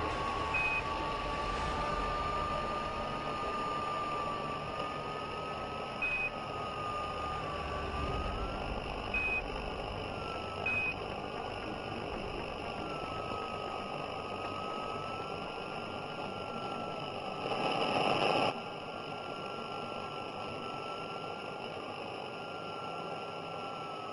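Radio-channel static: a steady hiss with a faint, slowly wavering whistle through it. Four short, high beep tones sound in the first eleven seconds, and there is a brief louder burst of static about eighteen seconds in.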